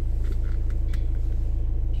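Car engine idling while stationary, a steady low rumble heard from inside the cabin, with a few faint short clicks in the first second.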